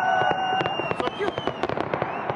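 Fireworks crackling: a dense, irregular stream of quick sharp pops, with a held pitched tone running underneath.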